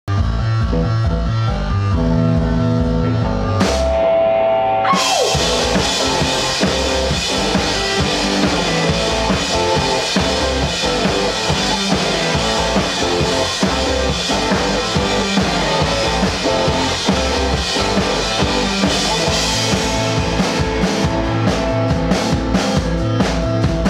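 Live indie rock band playing an instrumental intro. Synth and bass chords open it, there is a short break about four seconds in, and then drums and electric guitar come in with a steady beat.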